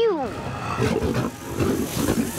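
Cartoon sound effect of window-box flowers suddenly surging up and writhing to life: a loud, dense rumble.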